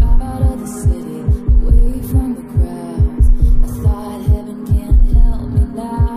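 Pop song intro with a heartbeat-like throbbing beat repeating in the low end under synth chords, with a steady hum tone at 243 Hz mixed in.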